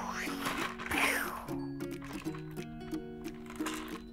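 Gentle background music, a slow melody of held notes. In the first second or so a soft rustling swish rises and fades over it.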